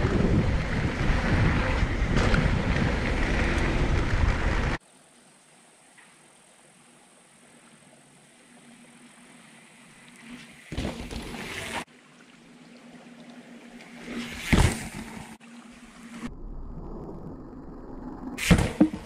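Mountain bike riding fast down a dirt singletrack, heard from the handlebar camera: wind buffeting the microphone over tyre noise for about the first five seconds. It then cuts off suddenly to a much quieter forest, where short rushes of rolling bike noise come as a rider approaches along the trail, with the loudest pass about two-thirds of the way in.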